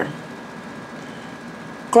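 A pause in a woman's speech filled by steady room noise: an even, faint hiss with a thin steady high tone running through it. Her voice trails off right at the start and comes back just before the end.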